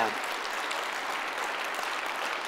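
Church congregation applauding steadily.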